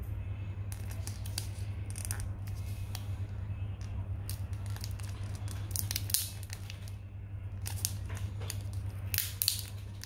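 Clear plastic protective film being peeled off a rugged phone, crinkling and crackling irregularly, with the most crackle about six seconds in and again near the end, over a steady low hum.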